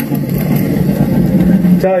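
Wind rumble and riding noise from a bike-ride video's microphone, played back loudly through a BT-298A Bluetooth mini amplifier and a bookshelf speaker. A short spoken word comes near the end.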